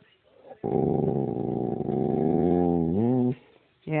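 American Bulldog 'talking': one long, low, drawn-out vocal grumble that starts about half a second in, holds steady for over two seconds and rises in pitch at the end.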